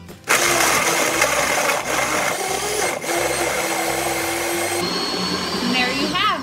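Countertop blender running at full speed, blending a smoothie of still-frozen peach chunks with yogurt and milk. It starts suddenly just after the start and runs steadily until just before the end.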